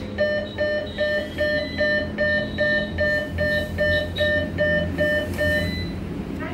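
ATM beeping steadily, about two and a half short electronic beeps a second for some five seconds, then stopping near the end. The beeps come as the machine rejects the debit card as blocked.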